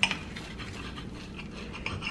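A knife cutting through a toasted wheat-bread sandwich on a ceramic plate: dry scraping, crunching strokes, with a sharp clink right at the start.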